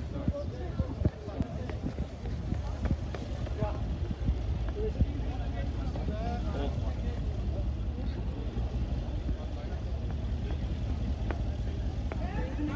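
A slow-moving Mercedes G-Class SUV passing close by with a steady low rumble, mixed with footsteps, phone-handling knocks and scattered voices of people nearby.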